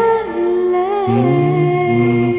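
A woman singing a long held note, wavering slightly, over the karaoke backing track's sustained closing chord of a pop ballad.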